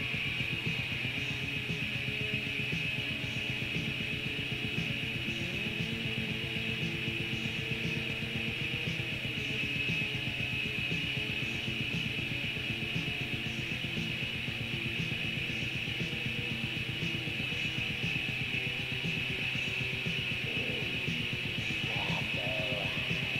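Raw black metal from a lo-fi 1992 cassette demo: distorted electric guitars with fast, unbroken drumming, playing steadily.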